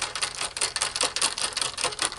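Precision screwdriver backing a screw out of the plastic oscilloscope housing, making a rapid, uneven run of small ticks and clicks.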